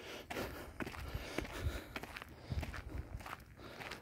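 Footsteps on a fine gravel path, a run of irregularly spaced steps.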